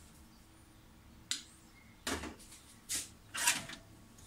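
Four short rustling handling noises about a second apart, from wire being worked on by hand, over a faint low hum.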